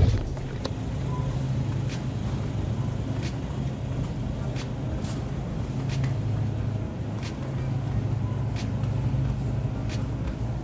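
Supermarket background: a steady low hum with a few faint scattered clicks.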